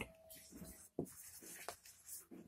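Whiteboard marker writing a word: faint short strokes of the felt tip rubbing across the board, with light ticks about a second in and again shortly after.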